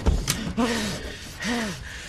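A man gasping and groaning in pain, a few short strained breaths that rise and fall in pitch about a second apart.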